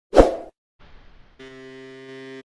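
Sound effects for a subscribe-button overlay animation: a loud pop, then a soft whoosh, then a steady buzzing electronic tone that begins about three-quarters of the way in and continues to the end.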